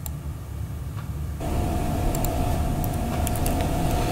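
Background noise of an open broadcast audio line with no one speaking: a steady low rumble, joined about a second and a half in by a sudden rise in hiss and a steady mid-pitched hum.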